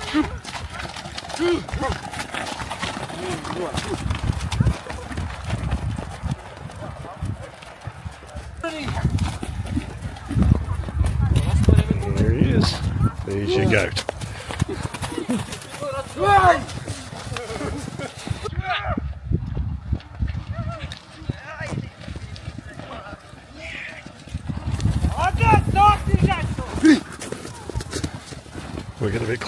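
Several horses milling and jostling at close range, their hooves thudding on snow and mud. Men's voices call out at times, loudest in a couple of stretches.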